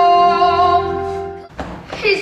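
A boy's voice holding one long sung note over stage-musical accompaniment, slowly fading, then cut off abruptly about one and a half seconds in.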